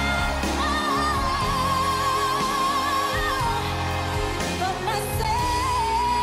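A woman singing a power ballad live, holding two long notes with vibrato, the second starting about five seconds in, over a band with saxophones and brass playing sustained chords.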